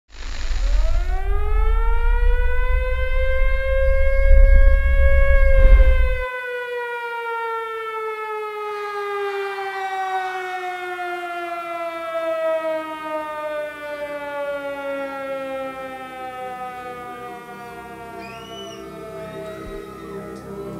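Air-raid siren winding up over about five seconds, then slowly winding down, with a heavy low rumble beneath it that cuts off suddenly about six seconds in.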